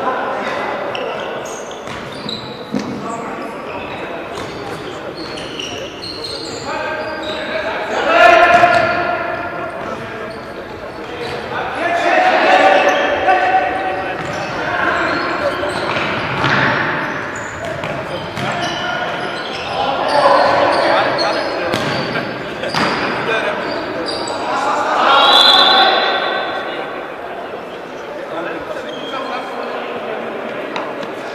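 Indoor football match in a reverberant sports hall: the ball being kicked and bouncing on the wooden floor, with players' shouts rising every few seconds, loudest about eight seconds in.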